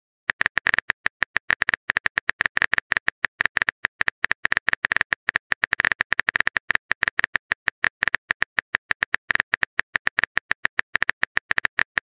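Smartphone keyboard typing sound effect: a rapid, steady run of short key clicks as a message is typed out.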